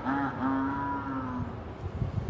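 A person's voice holding a long, drawn-out 'yaaas' cry at a steady pitch. A short note ends just after the start, then a longer one runs on, sinking slightly and fading out about a second and a half in.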